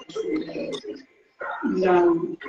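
A man's voice speaking Spanish, with a short pause past the middle and a drawn-out, held vowel near the end.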